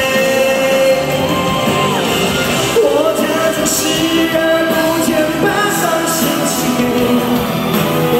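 Live pop song: a male singer sings into a handheld microphone over amplified band backing, with long held notes.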